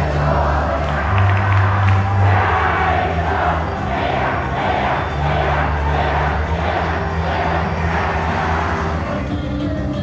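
An idol pop song played loud, with a crowd of fans shouting rhythmic chants in time with the beat. The chants are idol 'mix' calls, which the song is written to teach.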